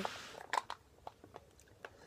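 A short breath, then a handful of faint, separate mouth clicks as a drink is sipped from a small plastic cup.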